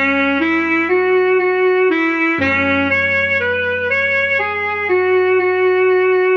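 Alto saxophone melody played slowly at half speed, one stepwise note about every half second, over sustained low backing chords that change a little over two seconds in.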